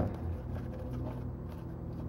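Steady low hum in the room, with faint light scrapes and taps from a paintbrush working paint in a plastic tub.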